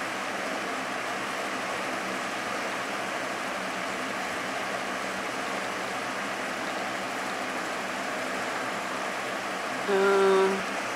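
Electric fan running with a steady rushing noise that does not change.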